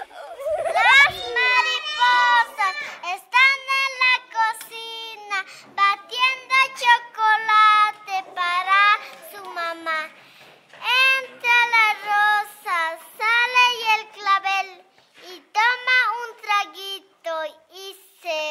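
A child's voice singing a high melody in Spanish in short phrases, with no instruments heard.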